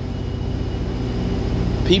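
A steady low mechanical hum with a faint high tone above it, running on through a pause in a man's talk; his voice comes back near the end.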